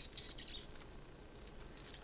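Plastic wrapper of a Kaldheim booster pack crinkling and tearing as its tear strip is pulled, loudest in the first half second and then dying down to soft rustling.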